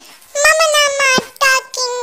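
A very high-pitched, pitch-shifted cartoon cat voice of the Talking Angela kind, talking in sing-song phrases with held notes that fall in pitch at their ends. It starts about a third of a second in and breaks briefly twice.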